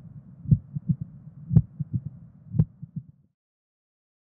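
Heart sounds of mitral stenosis. A loud first heart sound beats about once a second, with fainter clicks between the beats and a low rumbling murmur, matching the loud S1, opening snap and mid-diastolic rumble of a stenosed mitral valve. The sound cuts off a little after three seconds in.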